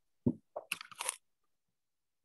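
A single dull knock, then about half a second of crackling, crunchy rustle.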